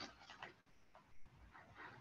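Near silence on a video-call line, with a few faint, brief sounds.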